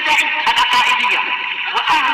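A man's voice singing an Arabic vocal piece with a wavering, melismatic melody, with a few short clicks over it.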